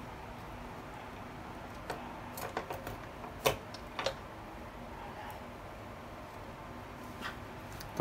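A few small, sharp clicks and taps of a small screwdriver tip and multimeter probes touching a power-window switch circuit board, over a steady low room hiss. The loudest click comes about three and a half seconds in.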